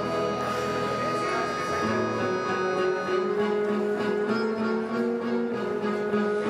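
Live acoustic band playing a slow, sustained intro: held chords on keyboard and harmonium, changing about every two seconds.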